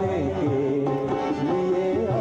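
Live qawwali performance: a man sings a sustained, ornamented melody that slides and wavers in pitch, accompanied by keyboard and tabla.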